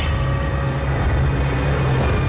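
Ominous background music built on a low, steady drone, with a few held higher tones above it.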